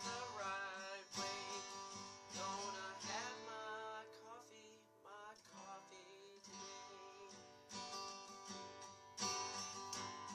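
Acoustic guitar strummed in chords while a man sings along, the playing dropping to a quieter stretch about halfway through before the strumming comes back strongly near the end.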